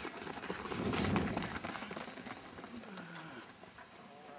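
Runners' footfalls on a synthetic running track as a group of sprinters passes close by, swelling about a second in and then fading away.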